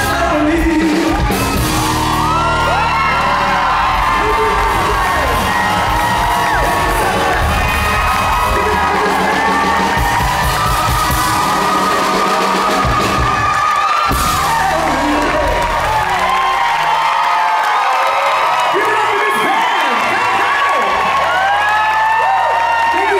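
Live rock-pop band with a male singer, played loud in a concert hall, with the audience screaming and whooping over it. A brief break comes about two-thirds of the way in. After it the band's low end thins out and the crowd's cheering and screams carry on as the song ends.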